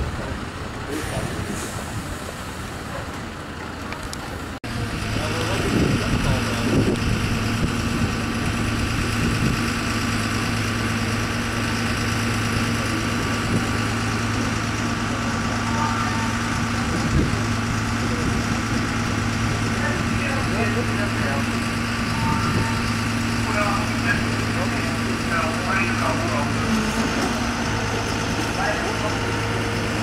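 A large fire-service truck's diesel engine running steadily, with voices in the background. There is a sudden cut about four and a half seconds in, after which the steady engine hum is louder.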